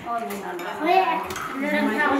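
Dishes and cutlery clinking a few times on a laden table, under people talking.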